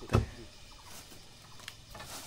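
A machete chopping into a standing tree trunk: one sharp strike right at the start, then a few faint knocks.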